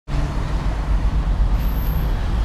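Steady low rumble of street traffic, with no distinct vehicle standing out.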